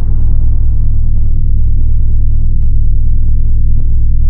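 Logo-sting sound effect: a loud, deep, steady low drone with a thin high steady tone above it and two faint ticks.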